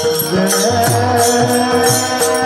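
Devotional group singing (bhajan) in a kirtan, with pairs of brass hand cymbals (taal) struck together in a steady rhythm, about four ringing clashes a second, under men's voices and a sustained melody.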